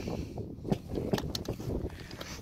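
Wind buffeting the microphone as a low rumble, with a few faint clicks about a second in.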